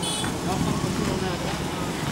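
Steady low engine rumble of heavy machinery and traffic under faint background voices, with a brief high-pitched tone just after the start.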